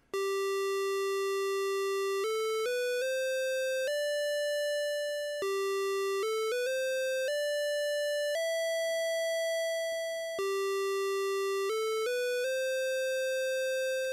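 Moog Subharmonicon oscillator (VCO 2) sounding one sustained buzzy tone while its sequencer 2 steps are tuned. The pitch climbs in small, note-by-note stair-steps as a step knob is turned, drops back to the starting note and climbs again three times, settling each time on a different note. This is the G–D–E–C chord progression being set up.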